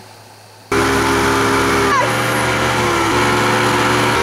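Towing motorboat's engine running at speed under wind and water hiss, starting abruptly under a second in; its pitch shifts slightly twice as a wakeboarder crashes into the water behind it.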